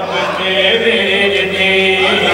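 A man's voice chanting a line of Shia mourning recitation in a drawn-out melodic style. The voice rises at first, then holds one long steady note.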